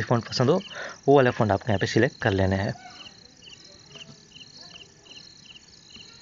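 Crickets chirping faintly: a steady high trill with a regular series of short chirps, about three a second, heard once the voice stops about three seconds in.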